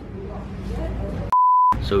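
Short edited-in censor bleep: a single steady mid-pitched beep of under half a second, about a second and a half in, with all other sound blanked beneath it. Low background chatter comes before it.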